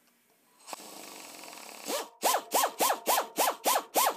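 Chicago Pneumatic 1/4-inch air drill drilling the head off an aluminium Avex pull rivet: a steady run for about a second, then the trigger pulsed in quick short bursts, about four a second, each a brief whine that rises and falls as the motor spools up and down.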